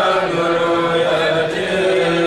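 A kourel, a group of men, chanting a Mouride xassida (sacred poem) in unison, holding each note before stepping to the next.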